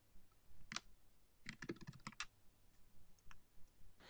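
Faint computer keyboard keystrokes: about half a dozen scattered, separate key clicks.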